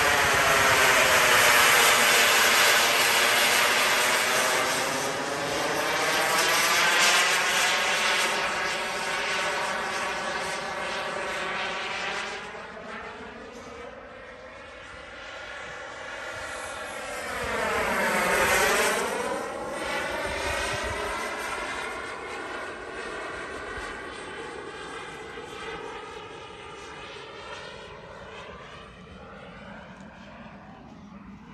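Kingtech K102 model jet turbine in a radio-controlled Mirage 2000 flying past: a loud whine and rush of jet noise at the start that slowly fades, a second close pass about 18 s in whose pitch sweeps down and up as it goes by, then a fade as the jet moves away.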